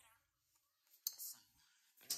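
Faint, breathy whispered speech from a woman, a few short soft bursts with near silence between them.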